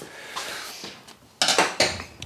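A soft rustle, then a quick run of metal clinks and clatters about one and a half seconds in, as small steel parts or hand tools are handled and set down on a workbench.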